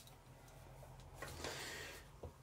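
Faint ticks of a pair of eyeglasses being unfolded and put on, then a soft rustle of handling near the end.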